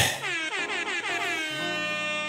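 An air-horn sound effect: one sustained blast whose pitch slides at the start and then holds steady.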